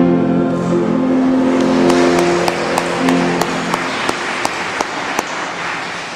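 A congregation finishes singing a birthday song with musical accompaniment, ending on long held notes. Applause with a few sharp claps breaks in near the end of the singing and fades out.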